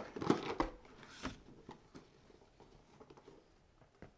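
Box packaging handled: a few crinkling rustles and clicks in the first second or so, then faint scattered ticks.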